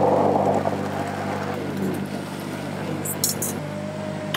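Countertop blender running, blending coconut pieces with water to make coconut milk. It is loud at first and settles to a steadier, quieter motor hum about a second in.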